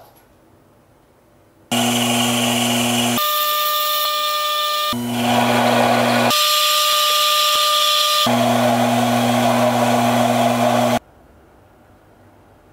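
Small metal lathe running and cutting a steel rod with a carbide tool: a steady motor hum under a loud cutting noise. The sound starts abruptly, changes character sharply a few times as it jumps between takes, and cuts off suddenly near the end.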